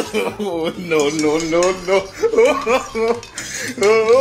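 Metal spoons clinking and scraping on plates as food is eaten, with a voice on long, wavering pitched notes running over it.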